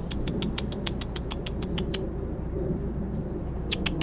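Quick tongue clicks made to call a squirrel: a fast run of sharp clicks, about seven a second, that pauses in the middle and starts again near the end, over a steady low background noise.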